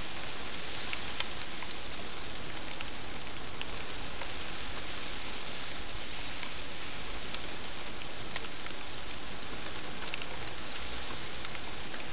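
A steady hiss with a few faint, scattered ticks.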